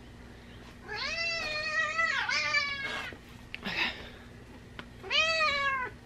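Domestic cat meowing several times: a long, drawn-out meow about a second in, a short one near the middle and another near the end.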